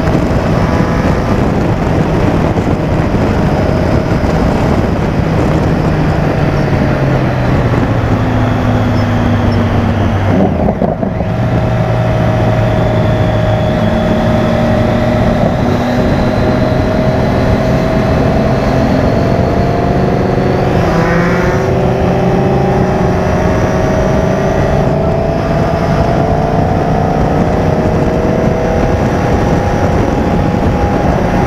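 Motorcycle engine running at highway speed, heard from the rider's onboard camera with heavy wind rush. The engine note dips briefly about ten seconds in, then its pitch climbs slowly.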